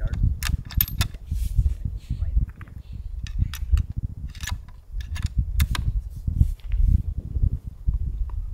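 Sharp metallic clicks and clacks of a bolt-action rifle being handled as the bolt is worked and a round chambered, over steady wind rumble on the microphone.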